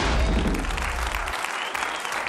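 Studio audience applause coming in over a TV show's logo transition. A deep bass rumble sits under the clapping for the first second and a bit, then stops.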